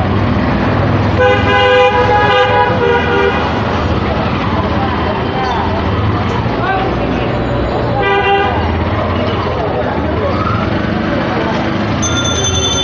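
Street traffic running steadily with vehicle horns honking: a long horn blast of about two seconds starting a second in, and a shorter blast near the eighth second.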